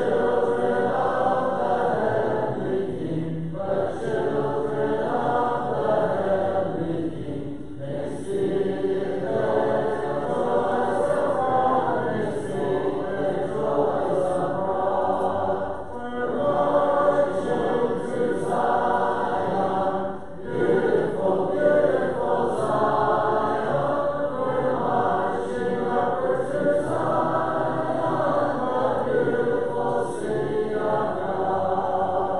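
Church congregation singing a hymn a cappella, without instruments, with brief breaths between lines.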